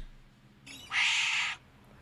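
A wombat gives one short, raspy, hissing call about a second in, lasting about half a second.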